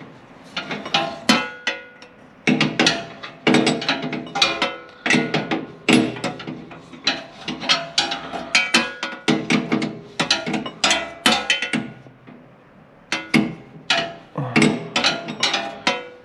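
Metal wrench working a bolt on the excavator's steel bodywork: quick irregular runs of sharp metallic clicks, each with a short ring, broken by brief pauses.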